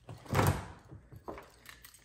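A door swung or slid open with a single short thump and rush of air about a third of a second in, followed by a couple of fainter knocks.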